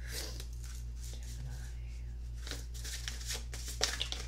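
A deck of oracle cards being shuffled and handled: soft irregular card rustles and flicks, busier in the second half, with a sharper snap near the end. A steady low hum runs underneath.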